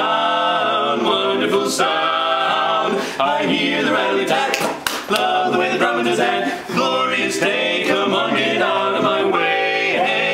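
Male barbershop quartet singing a cappella in close four-part harmony, with a few brief breaks between phrases.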